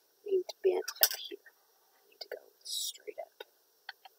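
Quiet muttering and whispering under the breath, mixed with sharp little clicks and taps as needle-nose pliers grip and bend thin floral wire against a cutting mat.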